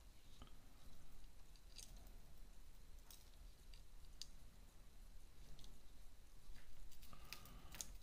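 Faint, scattered small clicks and light handling noise of wires and small electronic parts being fitted together on a quadcopter's flight-controller stack, as a plug is tried for fit.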